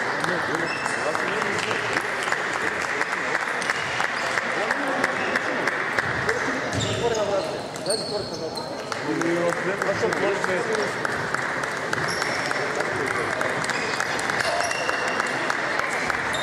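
Table tennis balls clicking on the table and bats in rapid rallies, many sharp clicks in quick succession. Under them runs a steady murmur of voices in the hall, with short high squeaks scattered through.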